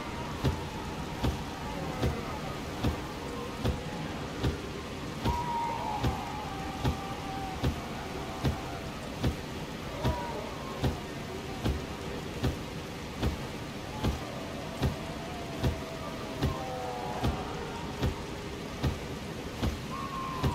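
Ambient background track: a steady rain-like hiss with a soft thump about every 0.8 seconds, and faint wavering tones drifting above it.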